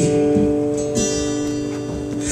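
Acoustic guitar strummed, its chords ringing out and fading slightly between a few light strokes.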